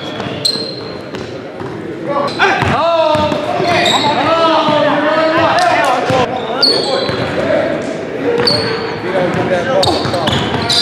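A basketball being dribbled on a hardwood gym floor, with sneakers squeaking sharply a few times as players cut and change direction.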